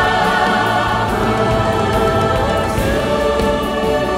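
Large children's choir singing with women soloists, many voices holding long notes together, loud and steady.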